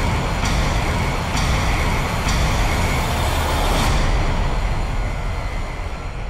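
Film sound effect of massive concrete walls crumbling and collapsing: a loud, dense rumble with several crashes about a second apart, fading near the end.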